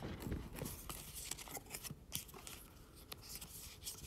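Faint scattered clicks and scrapes of fingers handling a white cardboard packaging tray, working a USB-C to headphone jack adapter out of its moulded slot.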